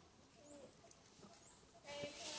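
A newborn macaque giving faint short squeaking calls, with a louder cry starting right at the end.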